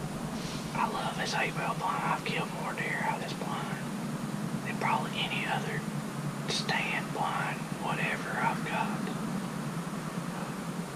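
A man whispering in short breathy phrases, over a steady low hum.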